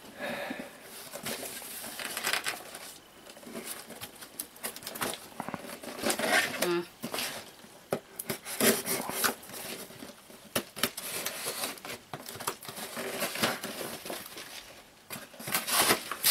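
Packing tape being picked at and torn off a cardboard box by hand, with the cardboard scraping and rustling in irregular bursts.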